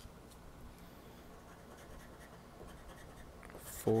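Faint scraping and handling sounds of a scratch-off lottery ticket, rubbed with a flat scraper, with a louder burst of scratching just before the end.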